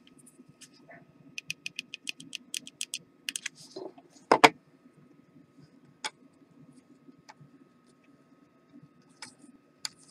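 Hot glue gun and wooden craft sticks being handled on a wooden desk: a quick run of about a dozen light clicks, a single louder knock about four seconds in, then a few scattered taps as the sticks are pressed into place.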